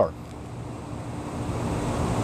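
Steady outdoor background noise with a faint low hum and no distinct event.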